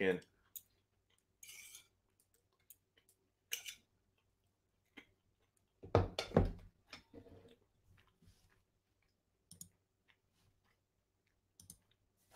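Sparse, quiet clicks from someone working a computer, with a short wordless vocal sound about six seconds in that is the loudest thing heard.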